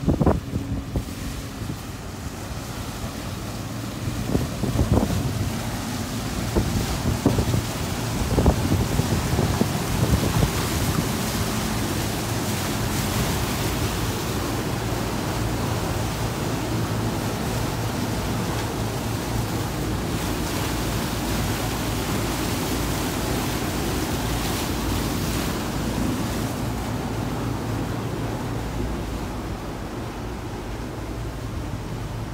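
Wind buffeting the microphone and water rushing past the hull of a power catamaran underway, over a steady low engine hum. Uneven gusts and knocks in the first ten seconds or so settle into an even rush.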